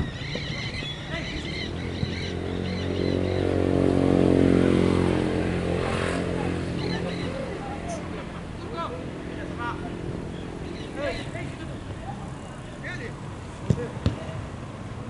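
An engine-driven vehicle passes by, its steady engine note swelling to its loudest about four seconds in and then fading away. A football is kicked sharply at the start and again near the end.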